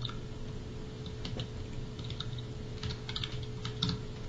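Faint, irregular typing on a computer keyboard, with a steady low hum underneath.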